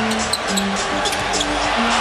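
Basketball game sound from an arena court: a ball being dribbled on the hardwood with short sneaker squeaks over crowd noise, while arena music plays held low notes that step up and down.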